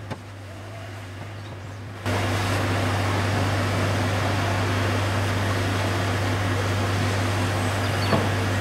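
Fire truck engine running steadily with a low hum; about two seconds in, a louder, even rushing noise comes in suddenly and holds to the end.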